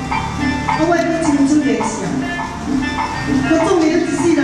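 A singer performing a Taiwanese opera (gezaixi) aria into a handheld microphone over a PA system, with held notes and pitch glides, over a steady instrumental accompaniment.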